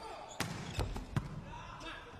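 Sharp hits of a volleyball in an indoor arena: three quick contacts about 0.4 s apart as a jump serve is played and the rally begins, the last one the loudest, over a low hall background.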